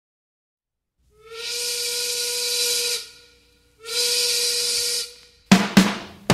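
Two long whistle blasts, each a steady tone over a strong hiss, the second shorter than the first. Drum hits start near the end.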